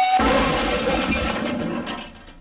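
A cartoon crash sound effect with shattering glass. It hits suddenly just after the start and crackles and tinkles away over about a second and a half.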